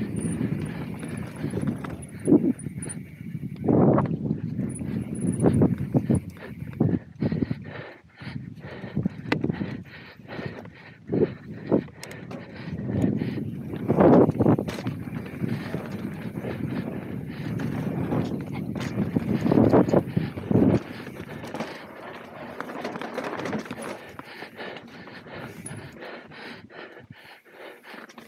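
Mountain bike ridden fast down a dry grass and dirt track: tyres rumbling over the ground with frequent knocks and rattles from the bike as it hits bumps, easing off and getting quieter for the last several seconds.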